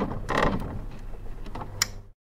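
Sound effects for an animated logo end card: a run of clicks and mechanical rattling with a swish about half a second in and a sharp click near the end, over a low hum, cutting off suddenly.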